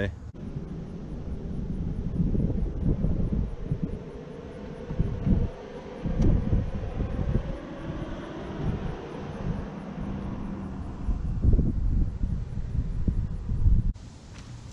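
Wind buffeting the microphone in uneven gusts, under the drone of a propeller or jet airplane passing overhead that swells over the first few seconds and fades away after about ten seconds.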